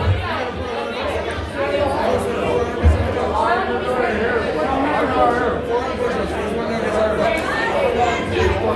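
Crowd of people talking over one another in a bar, with music playing low underneath.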